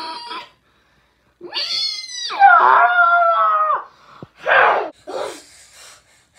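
A boy's strained, high-pitched vocal cry: a rising whine, then a loud wail held for about a second and a half, followed by two short breathy grunts. It is the sound of straining to force out words that won't come.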